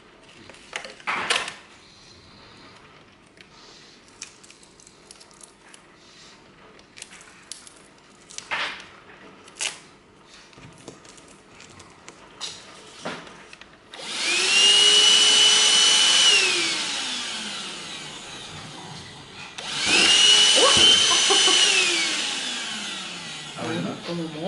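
A cordless handheld wet/dry vacuum cleaner being handled with scattered plastic clicks, then switched on twice near the end: each time its motor starts abruptly with a high whine that holds steady for about two seconds, then falls in pitch as the motor winds down.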